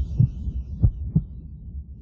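Four short, dull low thumps over a steady low hum.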